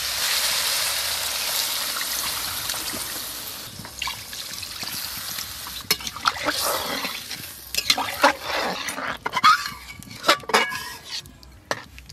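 Potatoes and mutton fat in masala sizzling in a hot metal karahi as water is poured in, the sizzle loud at first and dying away over about four seconds. Then a metal ladle stirs the watery curry, with scattered clinks and splashes against the pan.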